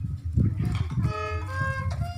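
A violin starts playing about a second in: a few held notes, each changing pitch after about half a second. A low rumbling runs underneath throughout.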